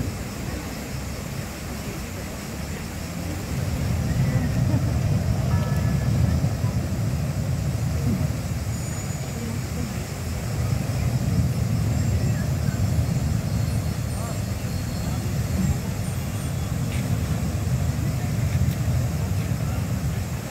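A large metal Cyr wheel rolling and spinning on stone paving, a low rumble that swells and eases as the wheel speeds up and slows.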